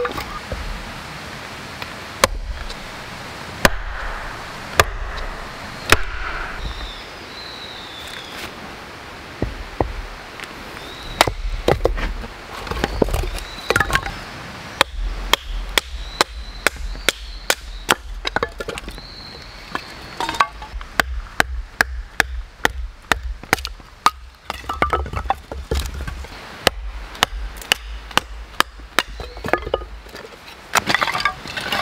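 A hatchet chops firewood on a wooden stump with a few spaced strikes. Then comes a long run of quick, sharp wooden knocks as a knife is batoned down through a split of firewood to make kindling.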